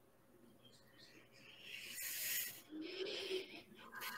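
Heavy breathing: a hissing breath about halfway through, then a breathy exhale with a faint voiced edge.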